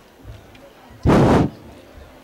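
A single loud, sudden burst of noise about a second in, lasting roughly half a second and then cutting off.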